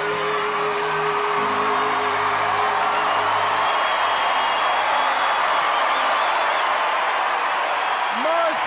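Audience cheering, whooping and applauding over a singer's long held final note and the backing music's closing chord. The note and music stop about three seconds in, and the crowd cheering carries on.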